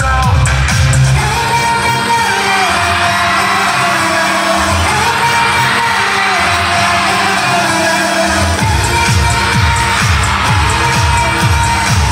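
K-pop dance song with female vocals played loud over a concert hall's sound system. The heavy bass beat thins out for several seconds and comes back strongly about eight and a half seconds in.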